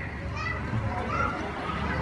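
Faint, indistinct voices over a low background hum of the street.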